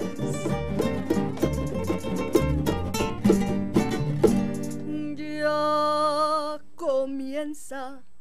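Two acoustic guitars strumming a fast Mexican folk rhythm, with hand claps, for about four seconds; then a woman's voice holds one long note with vibrato over the guitars, followed by short sung phrases near the end.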